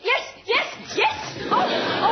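A person's excited wordless yelps and squeals: about four short vocal cries that rise and fall in pitch.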